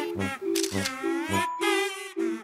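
Camera shutter clicking as a photo is taken, over cheerful background music.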